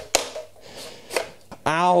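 A few short, sharp clicks and knocks from the electric unicycle's trolley handle being pushed back in, then a man laughs near the end.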